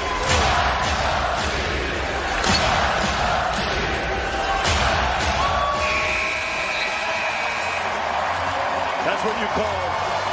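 Arena crowd noise with a few basketball bounces on the hardwood as the game clock runs out. About six seconds in, the game-ending horn sounds for about a second.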